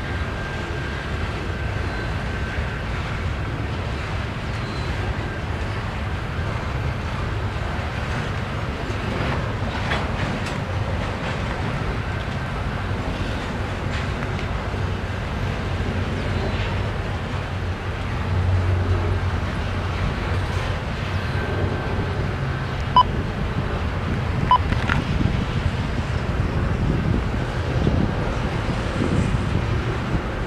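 Double-stack intermodal container train rolling past: a steady low rumble of freight car wheels on the rails, with a few sharp clicks in the later part.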